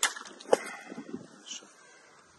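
A Damascus-steel knife slashing through a plastic water bottle: a sharp hit as the blade cuts it, water splashing out, and a louder knock about half a second in.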